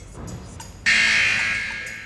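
Game-show buzzer sound effect: a loud, steady electronic buzz cuts in just under a second in and slowly fades, marking the end of the contestants' answer time.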